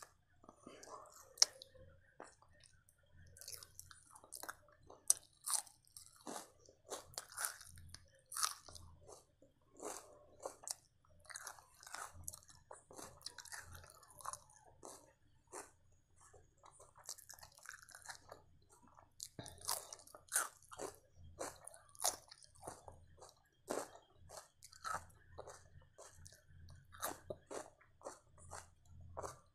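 Close-miked chewing of chapati and mutton keema curry: a steady run of short mouth clicks and smacks picked up by a clip-on microphone.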